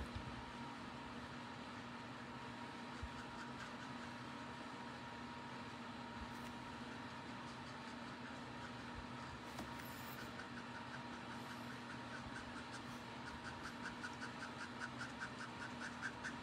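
Faint steady room hum, with the quiet scratch of a Copic alcohol marker's brush nib stroking on cardstock in quick repeated strokes that become clearer over the last few seconds.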